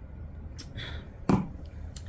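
A single sharp knock just over a second in, a glass being set down on a table, over a low steady hum. A softer breathy sound comes shortly before it.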